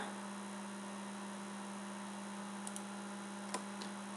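Steady low electrical hum over faint hiss from the recording chain, with a few faint clicks in the second half.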